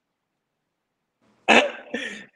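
Dead silence for over a second, then a sudden loud, breathy vocal outburst from a man about one and a half seconds in, fading quickly.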